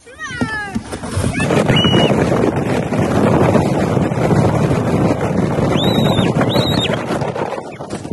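Plastic sled sliding fast down a snowy slope: a loud, steady rushing scrape of snow under the sled, with high-pitched screams from the riders at the start, briefly around two seconds in, and twice near the end.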